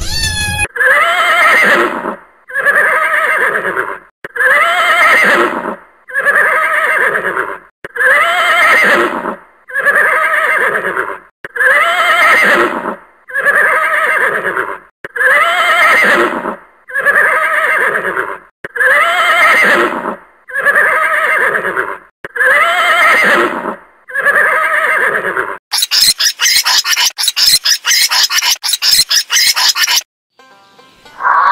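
A horse whinnying, the same whinny repeated about fourteen times at even intervals of a little under two seconds. Near the end the whinnies give way to a dense run of rapid clicks.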